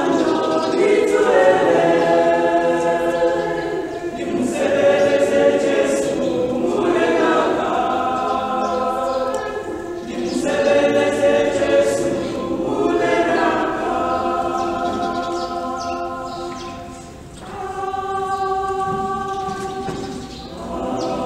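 Mixed church choir of men and women singing a gospel song in harmony without instruments, in sustained phrases a few seconds long. The singing dips briefly in volume near the end.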